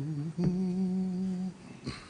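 A man humming: a brief note, then one steady note held for about a second, the starting pitch given to the congregation for an a cappella hymn.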